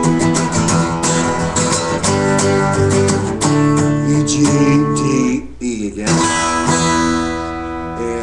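Steel-string acoustic guitar strummed hard and fast with rapid chord strokes, switching back and forth between E and D power chords. A little past five seconds the strumming breaks off, and a final chord, the E, is left ringing and slowly fading.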